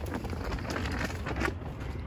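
Low rumble of wind on a phone microphone, with faint rustles as the phone is carried across grass.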